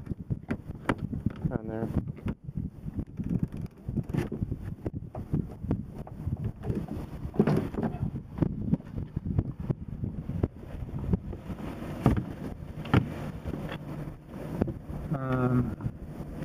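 Low wind rumble on the microphone with irregular knocks and rubbing, and a few faint snatches of voice.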